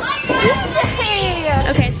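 Children's voices shouting and chattering while they play, with a woman saying "Okay" near the end.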